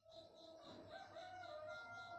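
A rooster crowing once, faintly: one long call of about two seconds that lifts a little in pitch midway, then drops away.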